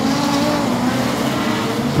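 A pack of modified sedan race cars racing on a dirt oval just after a restart, their engines blending into a steady drone.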